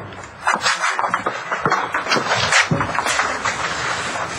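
Shuffling and rustling of people moving about, an irregular run of soft knocks and rustles.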